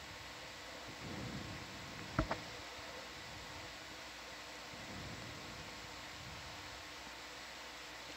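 Faint steady hiss with a low, even electrical hum from an open microphone, broken by one sharp click a little over two seconds in.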